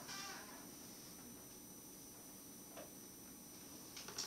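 Near silence: room tone with a faint steady hum. A short bit of voice trails off in the first half second, and there is one faint tick near three seconds in.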